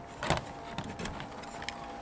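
A light knock about a quarter second in, then a few faint clicks: the plastic floodlight housing being hooked onto a small metal S-hook on its mounting bracket.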